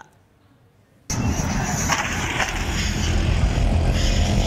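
Near silence for about a second, then loud street noise cuts in suddenly: a small three-wheeled auto-rickshaw engine running close by, with a heavy low rumble.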